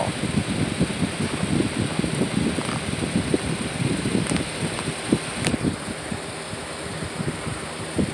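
Box fan running next to the bed, its airflow buffeting the phone's microphone with an uneven low rumble over a steady hiss. Two light clicks sound about four and five and a half seconds in.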